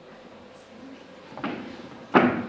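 A footstep on a wooden stage floor: one sharp knock about one and a half seconds in, over a faint hall murmur.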